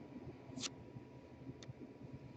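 Faint handling of trading cards and a clear plastic card holder, with two light clicks about a second apart.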